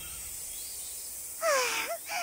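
Faint steady outdoor ambience from the animated soundtrack. About a second and a half in, a short pitched call dips and then rises in pitch.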